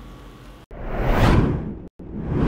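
Whoosh sound effect of a news bulletin's story-break transition: a rush of noise that swells and fades over about a second, then cuts off abruptly, with a second whoosh starting right at the end.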